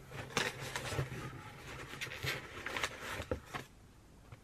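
Paper and cardboard packaging rustling and crinkling, with irregular small knocks and crackles, as items are lifted out of an opened cardboard parcel.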